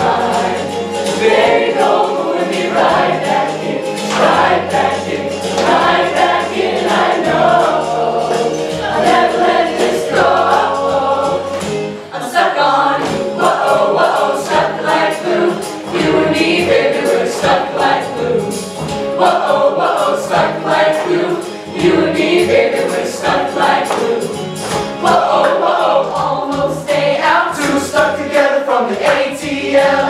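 A mixed high-school choir singing an upbeat song together, with low held accompaniment notes underneath.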